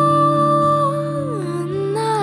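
Female vocalist holding one long sung note that slides down in pitch about two-thirds of the way through, over a steady low drone in a slow song.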